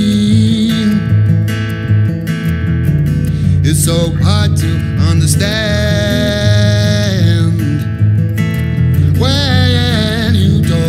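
Live acoustic song: a man singing long held notes over a strummed acoustic guitar, with an electric bass playing underneath.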